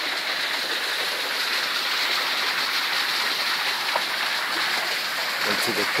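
Shallow creek water running over rocks, a steady rushing.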